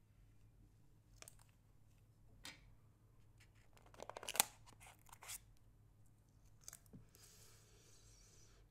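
Clear plastic packaging of a new iPod touch being handled as the player is pried out of its tray: faint scattered clicks and crackles of stiff plastic, with a burst of rapid crackling about four seconds in, the loudest, and a soft rustle of plastic film near the end.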